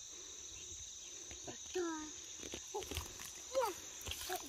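Steady high-pitched drone of insects, with three short voice sounds about two, three and three and a half seconds in, and a few light crackles of brush.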